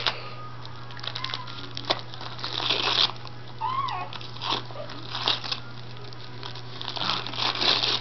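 Corgi tearing and crinkling gift wrapping paper with its mouth and paws, in irregular rustles and small rips.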